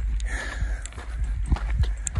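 Hiking boots crunching on a dirt trail at a steady walking pace.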